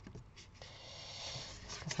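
Faint rustling and rubbing of card stock as it is bent and pinched along its scored folds by hand, with a few soft taps near the start.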